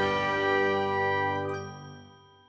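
Closing jingle of a logo animation: a held musical chord of several notes ringing on and fading out toward the end.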